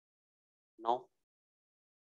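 A single spoken word, "no", about a second in; otherwise silence.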